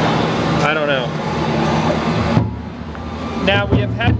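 Industrial machinery running with a steady low hum and a hiss. The hiss cuts off suddenly about halfway through while the hum carries on.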